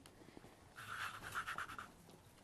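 Faint scraping and rubbing of a plastic cookie cutter being pressed and worked through rolled sugar paste against a wooden board, lasting about a second in the middle.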